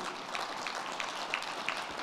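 Audience applauding, an even patter of many claps.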